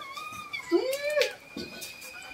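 Newborn Rottweiler puppy giving one short cry that rises and then falls, about a second in.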